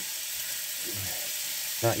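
Ground beef frying in a pan on a portable gas stove, a steady sizzle.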